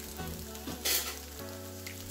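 Fried rice sizzling gently in a hot cast-iron skillet, the burner just switched off, over a steady low hum. A metal spatula gives a brief scrape about a second in.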